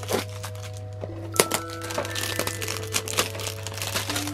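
Clear plastic wrap crinkling and crackling in sharp bursts as it is peeled off a cardboard makeup box, the sharpest crackle about a second and a half in. Soft background music with held, bell-like notes plays throughout.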